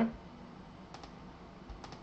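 A few faint computer keyboard clicks: one about a second in and two close together near the end.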